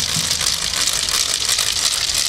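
Wooden ratchets (kereplő) whirled by busó maskers, a loud, dense, continuous clattering rattle.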